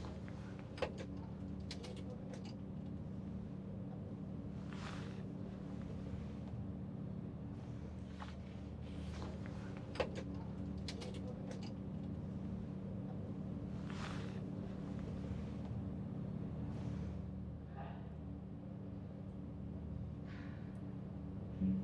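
Steady low machinery hum of a ferry's car deck, heard from inside a small car, with a few sharp clicks and short hissing bursts over it.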